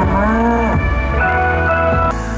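A male singer singing a Thai pop song live into a microphone over a backing track. A drawn-out note bends and falls in the first second, followed by a steady held note.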